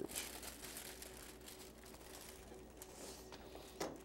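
Faint light rustling and soft ticks as shredded cheddar is sprinkled by hand into an aluminium foil pan, over a quiet studio room hum, with one sharper tap near the end.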